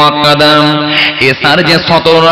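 A man's voice chanting on one long held note, amplified through a microphone, which bends into a new pitch after about a second.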